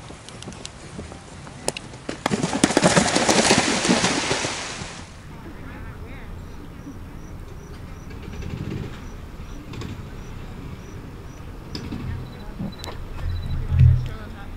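Horse splashing through the water jump on a cross-country course: a couple of seconds of loud, churning splashing with sharp slaps, which cuts off abruptly. A low thud follows near the end.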